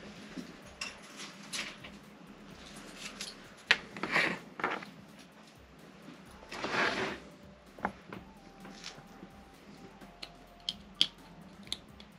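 Hands handling a scalpel and small resin miniatures on a workbench: scattered light clicks and taps, with two short rustling swells about four and seven seconds in.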